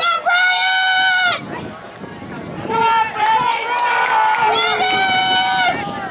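Spectators yelling long, drawn-out cheers for a runner in a track race, each call held high and steady. One held yell comes right at the start, several voices overlap in the middle, and another long yell comes near the end.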